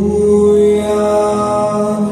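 Singing: a voice holding long, steady notes in a slow song.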